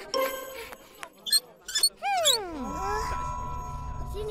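Cartoon soundtrack effects: a long falling glide in pitch about two seconds in, then a held note over a low rumble, after a few short vocal sounds.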